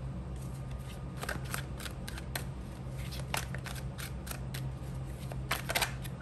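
Tarot cards being handled and thumbed through in the deck: a run of light, irregular card clicks and snaps, with a quick cluster of them near the end.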